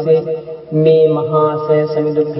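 Monotone chanting on one held pitch, in the manner of Buddhist chanting. It breaks off briefly about half a second in and resumes.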